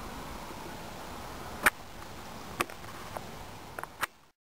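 Outdoor ambience: a steady faint hiss with a few sharp clicks, the loudest a little under halfway through and three softer ones in the second half.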